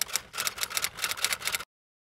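Typewriter typing sound effect: a rapid run of keystroke clicks as text is typed onto the screen, stopping abruptly near the end.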